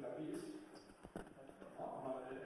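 A voice talking, with a couple of sharp knocks about a second in.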